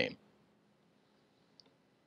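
Near silence after a spoken word ends, with one faint, brief click about one and a half seconds in.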